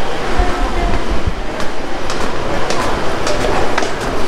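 Rumbling handling and movement noise from a handheld camera carried by someone walking, with faint knocks about twice a second in step with the walking.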